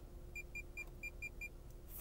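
Lexus IS 300 climate-control touch panel beeping six times in quick succession, short high beeps, each one confirming a half-degree step as the driver's-side temperature setting is lowered.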